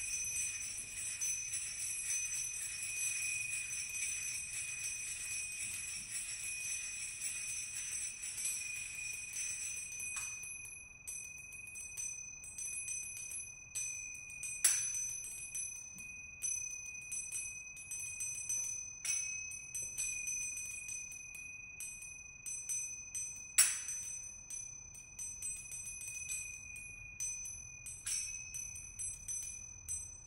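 Finger cymbals played by a percussion quartet: a dense, rapid shimmer of high ringing for about the first ten seconds, then separate strikes that each ring on, with a few sharper, louder hits.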